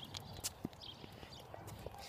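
Faint, irregular clicks and light knocks of a bicycle rattling as it is ridden along a paved road.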